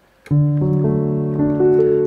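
A D major chord in a piano sound played on a MIDI controller keyboard. The notes D, F sharp and A are doubled an octave higher. They come in one after another from about a quarter second in and are all held, ringing together.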